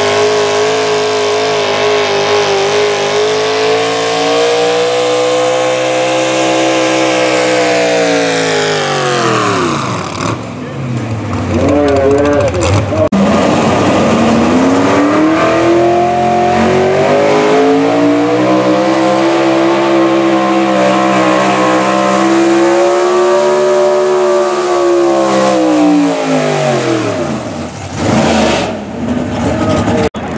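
Super stock gas pulling trucks' engines running at high revs while dragging a weight sled, two runs one after the other. The first engine holds a high note and falls away about a third of the way in. After a short lull the second truck's engine climbs back up, holds high, and drops off near the end as its run finishes.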